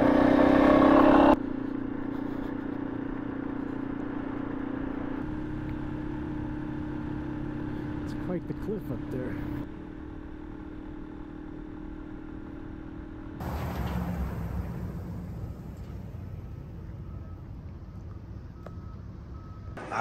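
Motorcycle engine running at a steady cruising pace under wind noise while riding. The loudness shifts abruptly a few times where the footage cuts, and the first second or so is loudest.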